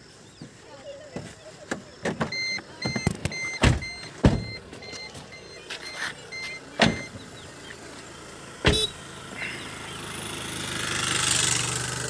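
A car's electronic warning beeper sounding in a quick, even run of high beeps for about four seconds, among several sharp knocks of the car's doors being handled and shut. A rising rush of noise swells near the end.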